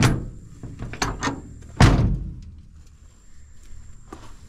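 Steel cab door of an old Ford dump truck being shut: a sharp knock at the start, a couple of smaller clicks about a second in, then a loud slam a little before two seconds that rings out briefly.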